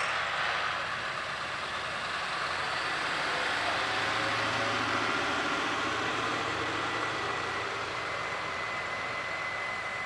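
Heavy truck engine running at low speed, with steady road and tyre noise that swells slightly mid-way and eases off.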